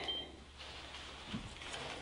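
A short high electronic beep just after the start, then faint handling of a compact digital camera over a low room hum, with one soft knock about halfway through.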